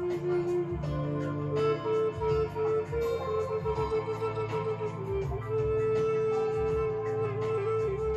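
Native American 'Dragonfly' flute playing a slow melody of long held notes. A run of quick ornamented notes comes in the middle and a long held note near the end, over a guitar accompaniment.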